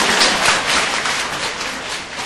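Audience applauding, loudest about half a second in and slowly dying away.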